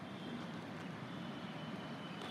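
Steady low rumble of distant town road traffic, with no single event standing out.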